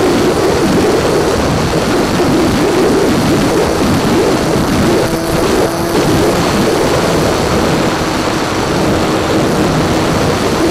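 Electric motor and propeller of a small foam RC plane, heard through its onboard keychain camera, running under heavy wind rush, with a faint whine that comes and goes as the throttle changes.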